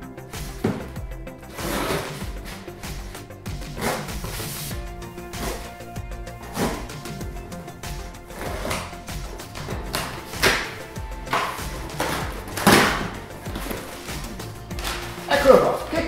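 Cardboard shipping box being cut and torn open with scissors: a series of sharp tearing and ripping sounds as the tape is cut and the flaps are pulled apart, over steady background music.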